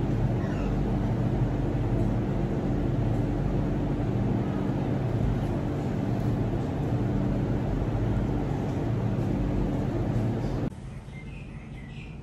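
Steady room hum: an even low drone with a few steady low tones, which drops suddenly to a faint hiss near the end.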